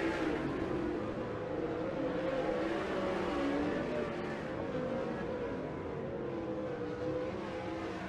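Winged 360 sprint cars' V8 engines running on a dirt track, their pitch rising and falling as they drive through the turns.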